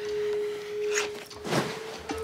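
Background music reduced to a single sustained tone, held steady, with two brief soft noises about a second in and shortly after.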